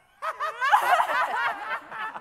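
Several men laughing together, starting a moment in, with overlapping voices breaking into giggles and chuckles.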